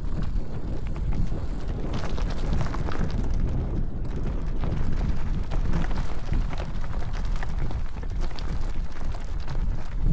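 Electric mountain bike rolling over a rough, rocky trail: wind rumbling on the microphone and many irregular clicks and knocks from tyres on stones and the bike rattling.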